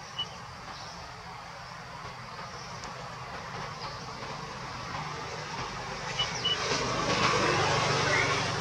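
Steady outdoor background rumble and hiss that grows louder over the last few seconds, with a couple of short high chirps about six seconds in.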